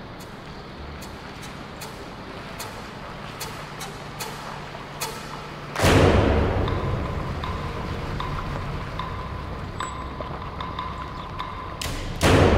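Tense film score: a low drone under sharp ticking clicks that come about once a second. About six seconds in, a loud booming drum hit fades out slowly, and a second boom lands at the very end.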